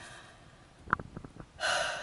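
A woman's soft mouth clicks about a second in, then an audible intake of breath near the end.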